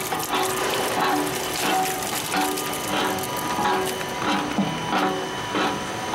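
Vincent CP-4 screw press running under a feed of wet polymer: a steady machine hum with a repeating mechanical clatter about one and a half times a second.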